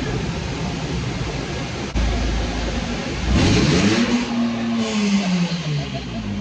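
Loud, steady rush of air into a minivan's open windows, heavy in the low end, plainly from the car wash's air dryer blowers. From about halfway through, a droning tone rises and then slowly falls.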